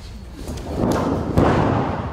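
Heavy thuds of a wrestler being taken down onto the wrestling ring's mat, the ring boards booming. The loudest impact comes about one and a half seconds in.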